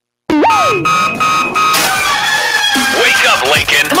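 Radio show opening sound effects: a rooster crowing starts suddenly after silence, with steady ringing tones, then music with voice snippets comes in about two seconds in.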